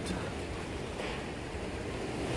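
Typhoon-force wind outside a sliding glass door, a steady rushing roar heard from inside the room.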